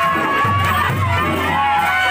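Chyabrung, the Limbu double-headed barrel drums, beating a steady low beat about twice a second under a crowd's cheering and shouting.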